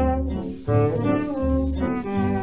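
Instrumental passage of a dance-band orchestra record: a brass section plays a melody over sustained bass notes, the notes changing about every half second.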